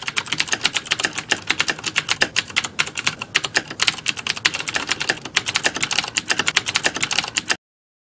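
Rapid, continuous keyboard typing clicks, a typing sound effect matching the on-screen text being typed out letter by letter; it stops abruptly near the end.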